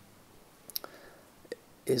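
A quiet pause in a man's speech, with a few faint short clicks, then his voice resumes near the end.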